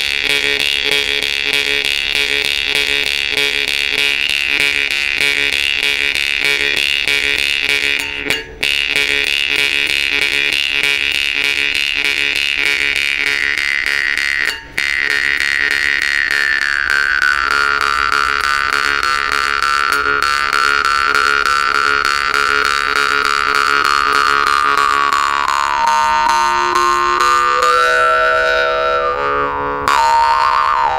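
Volgutov 'Vedun' temir-khomus (Yakut jaw harp) played with rapid, even plucking over a steady drone, its whistling overtone melody sliding slowly downward through the middle and shifting again near the end. Two brief gaps break the sound, about eight and fifteen seconds in.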